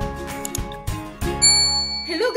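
Intro music, then about a second and a half in a single bright bell-like ding that rings on: the notification-bell sound effect of a subscribe-button animation.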